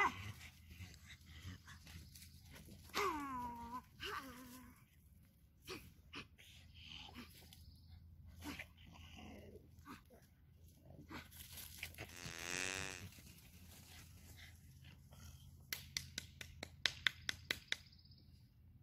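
Pug whining while it plays rough: two short falling whines about three and four seconds in, and a longer wavering one about twelve seconds in. Scattered scuffs and clicks go on throughout, with a quick run of sharp clicks near the end.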